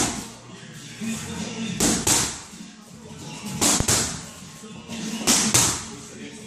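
Boxing-gloved punches landing on focus mitts in quick pairs, sharp smacks about every one and a half to two seconds.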